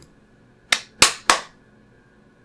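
Three sharp clicks in quick succession, about a third of a second apart, starting a little under a second in.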